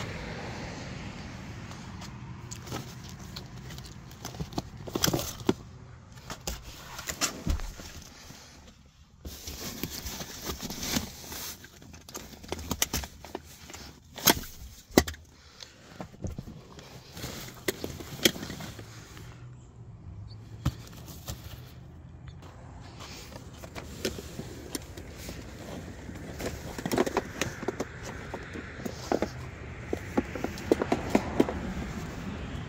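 Scattered clicks, knocks and rustling as a child car seat is unlatched and lifted out of a car's back seat.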